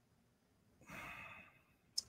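A person's faint sigh, a soft breathy exhale about a second in and lasting about half a second, with a short click near the end; otherwise near silence.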